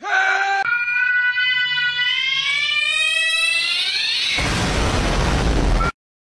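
A young man's short shout, then a long shrill scream rising steadily in pitch. About four and a half seconds in it breaks into a loud burst of harsh noise that cuts off suddenly just before the end.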